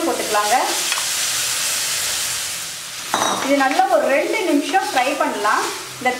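Boiled mushroom pieces sizzling as they fry in butter in a kadai, with a spatula stirring them. The sizzle is heard alone from about one to three seconds in, and a voice talks over it at the start and from about three seconds on.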